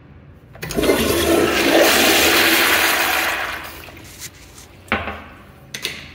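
Commercial toilet's chrome flushometer valve flushing: a loud rush of water starting under a second in, lasting about three seconds and then tailing off. Two sharp clicks of the stall door latch follow near the end.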